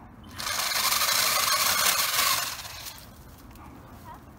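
Battery-powered pole saw running in one burst of about two seconds, then winding down as the trigger is let go.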